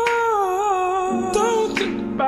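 A singer humming a wordless melody with a wavering, vibrato-like pitch, joined about halfway by a lower held note.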